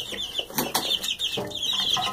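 A brood of two-week-old Barred Rock chicks peeping: a steady stream of short, high, falling chirps. A few sharp knocks and rustles come in among them as a hand reaches into the brooder.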